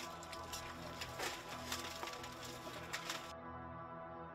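Sombre background music with steady sustained tones, over scattered cracks and clatters of broken rubble being shifted by hand. The rubble sounds stop abruptly near the end, leaving the music alone.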